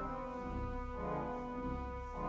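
Pipe organ playing sustained chords over a low bass, with a new chord coming in about a second in.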